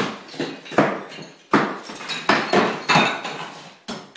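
Sharp, irregular knocks of demolition work on brick, about eight in four seconds, each ringing out and fading before the next.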